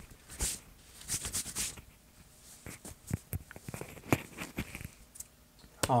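Handling noise at close range: light rustling and scattered small clicks and taps as things are moved about by hand.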